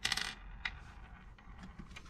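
A brief bright jingle of small loose metal parts at the start, then a light click about two-thirds of a second in and a few faint ticks.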